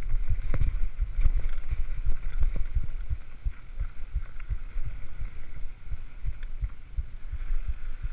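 Mountain bike riding fast down a dirt singletrack, heard from a camera on the rider: irregular low thumps and knocks, several a second, as the bike and camera jolt over trail bumps, over a steady hiss of tyres and rushing air.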